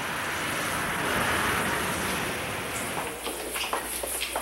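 A car driving slowly, heard from inside, with a steady hiss of tyres and engine that dies away about three seconds in, followed by a few light taps near the end.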